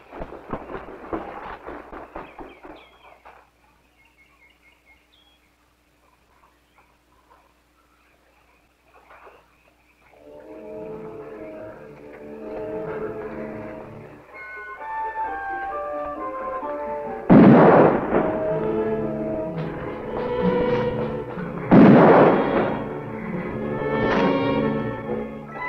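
Film soundtrack: a few seconds of faint, irregular rustling, then a quiet gap. Then an orchestral score enters about ten seconds in with held notes and is struck twice by loud crashing stings, about four seconds apart.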